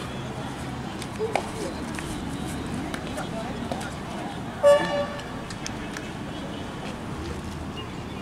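Voices of players and spectators around an outdoor kabaddi court, with one short, loud horn toot about halfway through.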